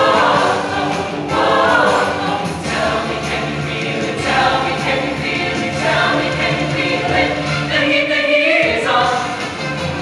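Mixed show choir of male and female voices singing a song together in harmony, with sustained low notes underneath.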